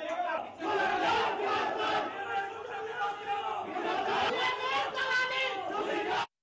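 A crowd of men shouting over one another in a heated argument.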